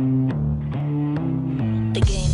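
Background music: a bass line of held notes stepping between pitches, over a steady light tick about twice a second.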